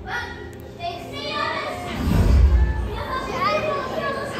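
Voices of a crowd that includes children, echoing in a large hall, with a deep rumble about two seconds in.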